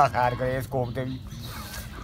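A man speaking in Punjabi for about the first second, then a short pause with only faint background noise.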